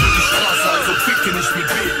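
BMW M5's tyres squealing in a sustained skid as the car drifts and burns out, with its engine running under the slide.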